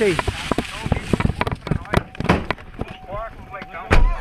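Irregular knocks and clatter of a camera being handled as its holder gets into a pickup truck, ending in a loud thump near the end.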